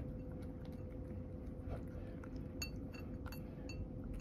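A cat eating chopped carrot with bonito flakes from a ceramic bowl, chewing softly. In the second half come a few sharp, ringing clinks against the bowl, over a steady background hum.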